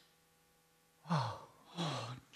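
An actor's two breathy, voiced sighs, each falling in pitch: the first about a second in and a shorter one near the end, heard as relief as the chase ends.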